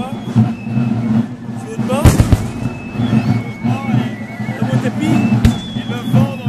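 Black-powder blank shots: a loud bang about two seconds in with a short crackle of further shots right after, and a single bang shortly before the end, over crowd chatter.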